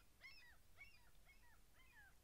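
Faint bird calls: a quick, regular series of short notes, each rising and falling in pitch, about four a second.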